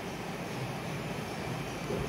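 Steady background hum and hiss of a room, with no speech.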